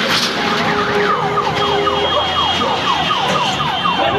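A siren sounding in quick repeated pitch sweeps, about three a second, over steady street noise.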